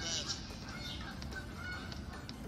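Anime soundtrack played through a tablet's speaker: short, high chirping squeaks repeating several times a second over a low hum.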